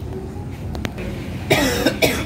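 A person coughing, a short harsh burst about one and a half seconds in, after two faint clicks.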